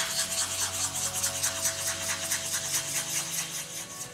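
A small piece of Baltic amber is rubbed by hand on fine-grit sandpaper in quick, rhythmic back-and-forth scratching strokes. This is the final hand-sanding stage before polishing.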